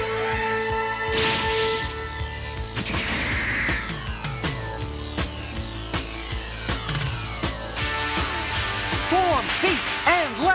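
Dramatic cartoon soundtrack music with held tones, overlaid with electronic sci-fi sound effects: sweeping whooshes and falling zaps, then a run of quick warbling chirps near the end.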